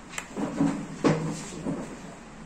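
Handling noise from multimeter test probes pressed on a transistor's leads: a few sharp clicks and short scraping knocks, the loudest about a second in.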